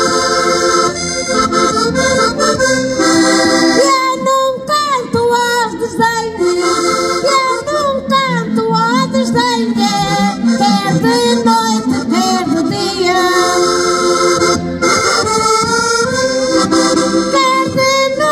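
An accordion playing a lively folk accompaniment, with a woman singing over it into a microphone through the middle of the stretch.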